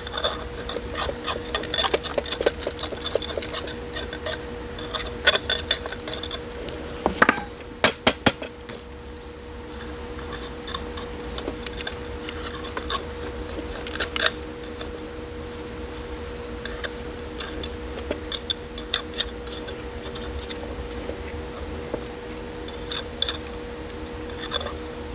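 A metal spoon handle poking and scraping through gritty, gravelly potting mix, clicking against the grit and the small pot as the mix is settled around a repotted succulent. There is a run of sharper knocks about seven to eight seconds in.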